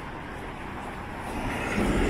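Road traffic on a city street, with an SUV passing close by. Its tyre and engine noise swells loudly near the end.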